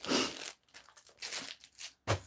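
Crinkling plastic of a sealed pack of polypropylene 20-pocket sleeve pages as it is handled, coming in a few short bursts.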